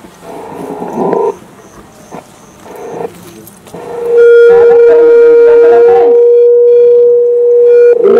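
Microphone feedback through a PA system. About four seconds in, a loud, steady tone at one pitch builds up quickly and holds to the end, with faint voices beneath it. Before it come brief bursts of voice.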